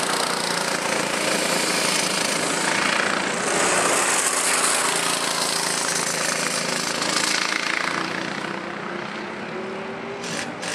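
Small go-kart engines running hard as karts lap the track, swelling as they pass and fading off near the end.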